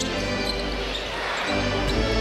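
Music playing over an arena sound system with crowd noise, and a basketball being dribbled on a hardwood court.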